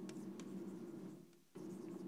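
Chalk writing on a blackboard: faint scratching with a few light taps as letters are chalked, breaking off briefly a little past halfway.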